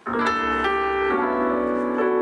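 A song's instrumental intro starting suddenly: held piano-like keyboard chords that change twice.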